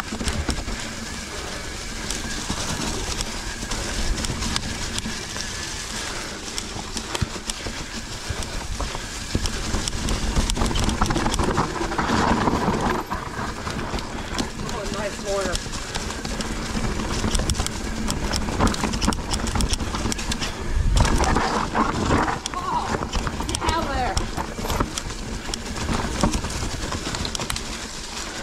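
Specialized Enduro mountain bike descending a dirt trail: steady tyre and wind noise with rapid rattling and clattering of the bike over bumps, and a heavier knock about two-thirds of the way in.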